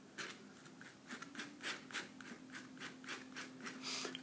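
Metal palette knife scraping and smearing oil paint across paper in quick short strokes, about four or five a second.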